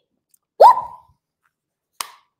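A woman's short, loud 'whoop!' exclamation, her voice sweeping sharply up in pitch about half a second in.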